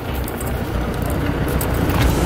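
Tractor engine running, a steady low rumble that grows slightly louder.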